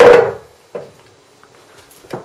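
A 2¼-inch American pool ball coming down a UK pool table's ball-return chute and striking the table's wooden framework: one loud knock with a short ring, then a smaller knock less than a second later. The ball is too big for the UK table's return run and comes to a stop against a supporting beam.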